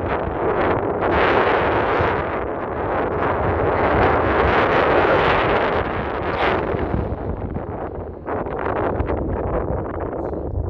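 Wind buffeting the microphone on an exposed moorland hilltop: a loud, gusting rush of noise that eases briefly about eight seconds in.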